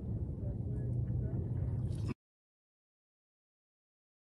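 Low, steady outdoor background rumble that cuts off abruptly to dead silence about two seconds in.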